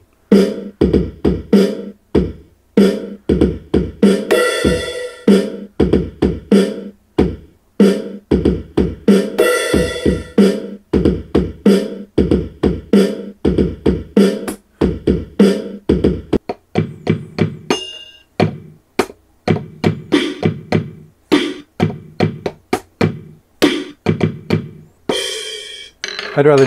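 Electronic drum sounds from the Sylvania SP770 boombox's light-up drum pads, struck by hand and played through its speaker: an irregular, fast string of drum hits with a few longer, hissier ones among them. The pads are not pressure-sensitive, so every hit plays at much the same strength however hard it is struck.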